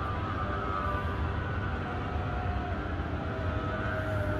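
Steady low rumble of distant city traffic, with a few faint drawn-out tones above it that waver slightly in pitch.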